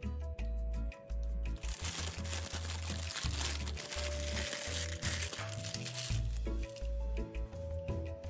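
Thin plastic piping bag crinkling as it is gathered and twisted shut by hand, for about four and a half seconds starting a second and a half in, over background music with a steady bass line.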